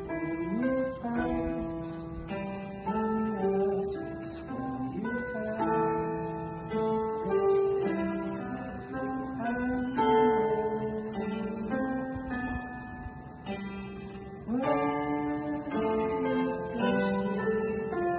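Music played on an electronic keyboard: chords under a slow melody, in a plucked, guitar-like tone.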